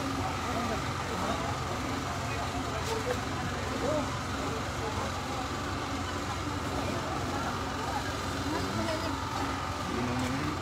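Street background: a steady low hum from a running vehicle, with indistinct voices of people standing around.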